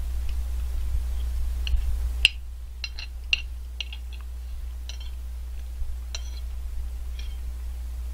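A metal spoon clinking and scraping against a ceramic plate in a string of light, sharp clicks, the loudest about two seconds in, over a steady low hum.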